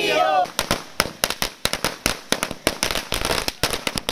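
A string of firecrackers going off on the ground: a rapid, irregular run of sharp bangs starting about half a second in.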